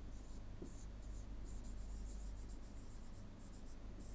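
Pen stylus scratching in short strokes across a writing tablet as a word is handwritten, over a steady low electrical hum.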